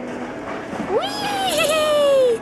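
A young child's long, high-pitched squeal starts about halfway in. It rises quickly, holds with a brief wobble, then slides down in pitch.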